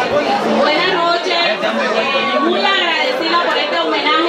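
Speech: a woman talking through a microphone and PA, with crowd chatter.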